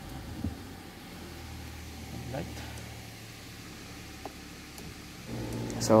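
Nissan Patrol Y62 engine starting and then idling with a steady low hum, heard from inside the cabin.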